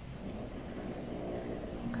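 Quiet, steady background hiss and hum from a video-call recording, with a faint voice murmuring in the second half just before speech begins.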